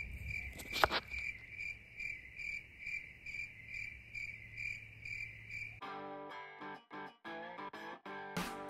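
A high, thin chirp repeating evenly about two and a half times a second, over a faint low rumble of wind. Near the end it stops and strummed guitar music comes in.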